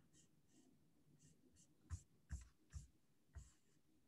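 Near silence with four faint, short taps in the second half, from clicks on a laptop as slides are paged through.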